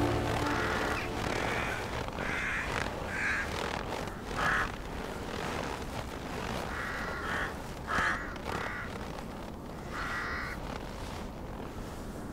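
Crows cawing: about eight short, harsh calls at uneven intervals of one to two seconds, over a faint steady hiss.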